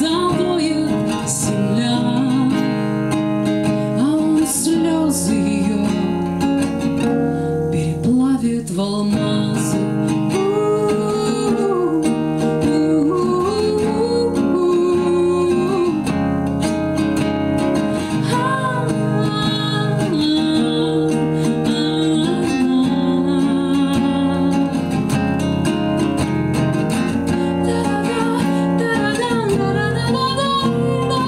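A woman singing a Russian bard song, accompanying herself on a strummed acoustic guitar.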